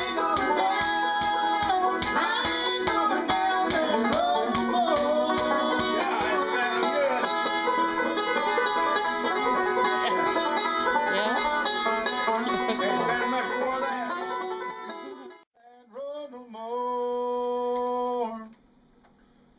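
Bluegrass music with a banjo picking out front over other plucked strings, cut off suddenly about fifteen seconds in. After a brief gap, a short sung phrase ends in one long held note.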